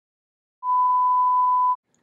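A single steady electronic bleep, one pure tone lasting about a second, starting about half a second in out of dead silence.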